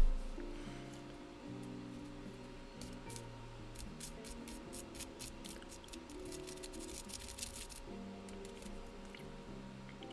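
Soft background music with held low notes. From about three seconds in, a run of small clicks and snips as scissors cut open the stub of a smoked cigar. A single thump comes right at the start.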